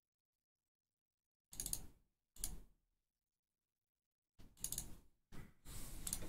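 Computer mouse clicks and desk handling sounds in a handful of short separate bursts, starting about one and a half seconds in and coming closer together near the end. There is dead silence between them.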